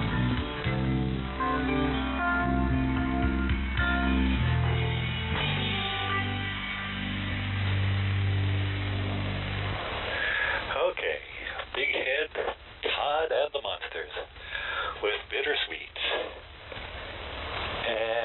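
A shortwave pirate radio broadcast received in upper sideband, with the narrow, band-limited sound of shortwave reception. Music with guitar plays for about the first ten seconds and then ends, and a voice starts talking.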